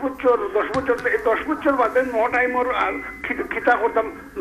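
Speech only: a caller talking without pause over a telephone line, the voice thin and cut off above the middle range.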